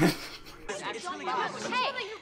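Speech: a brief voice at the start, then several people talking over one another in a film's dialogue.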